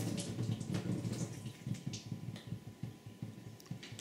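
Thin streams of tap water falling from small nozzles into the vessels below in a falling-water electrostatic generator, with an irregular trickling and dripping.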